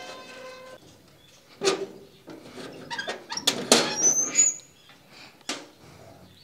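Metal grille gate and door being handled: a series of knocks and rattles, with a short high squeak about four seconds in.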